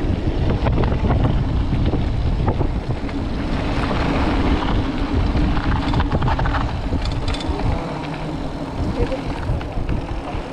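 Wind buffeting a handlebar camera microphone on a moving mountain bike, a heavy low rumble with scattered clicks and rattles from the bike on the dirt trail. The rumble drops off about eight seconds in as the bike slows.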